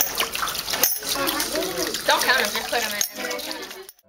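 Water pouring from a tube onto a small model water wheel and splashing into a plastic tub, under indistinct children's voices. The sound cuts off abruptly near the end.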